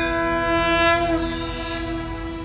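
TV programme graphics sting: a held electronic chord of many steady tones, with a shimmering sweep rising in the highs about a second in, marking the start of a new segment.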